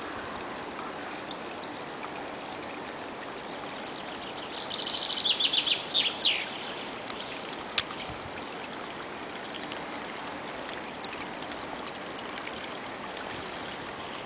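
A small woodland stream trickling steadily, with faint bird chirps throughout. About four and a half seconds in a songbird sings one loud, fast trill lasting about two seconds, and a single sharp click comes just before eight seconds.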